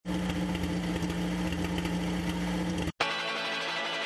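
Film projector running sound effect, a steady whirring hum with a fine mechanical rattle. It cuts off sharply just before three seconds in, and a different sound, the opening of the music, follows.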